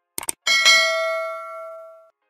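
Subscribe-button animation sound effect: two quick mouse clicks, then a notification bell chime that rings and fades away over about a second and a half.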